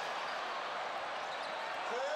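Steady crowd noise in a basketball arena, an even background murmur under the game.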